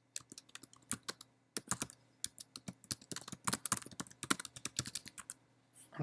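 Typing on a computer keyboard: a quick run of keystrokes with a short pause about a second in, stopping near the end.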